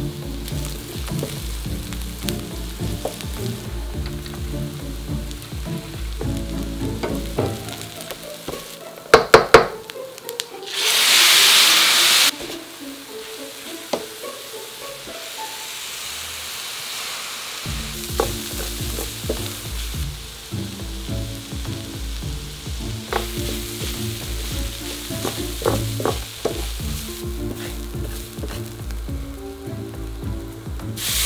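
Food sizzling in a stainless steel skillet while a wooden spatula stirs it. About nine seconds in come a few sharp knocks, then a loud burst of sizzling for about a second and a half.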